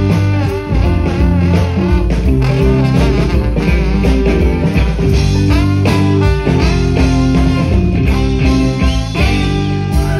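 Live rock band playing an instrumental break: a trombone solo with wavering, sliding notes over electric guitar, bass and drums.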